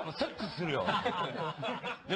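People laughing and chuckling, mixed with bits of speech, in the wake of a punchline.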